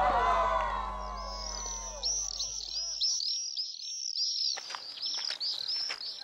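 Music fading out, then a small bird chirping repeatedly, high and quick, about two to three chirps a second. Faint footsteps scuff on a gravel track from about two-thirds of the way in.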